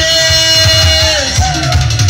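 Loud live dance music from a keyboard band: a lead melody holds one long note for over a second, then slides into shorter notes, over a steady pounding bass and drum beat.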